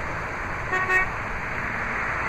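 A single short car-horn toot, one steady note lasting about a quarter second, a little under a second in, over a steady background hiss.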